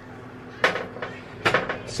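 Two sharp knocks on a plastic cutting board, about two-thirds of a second and a second and a half in, as cooked chicken pieces are put down on it.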